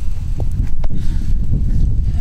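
Wind buffeting the microphone: a loud, steady low rumble that starts suddenly with a gust, with a couple of faint clicks about half a second and a second in.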